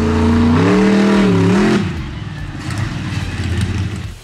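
Monster truck's 1,500-horsepower engine revving hard: its pitch climbs about half a second in, holds, then drops away just before the two-second mark, and the engine runs on lower and rougher.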